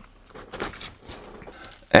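Quiet pause in a small room with a few faint light knocks and rustles.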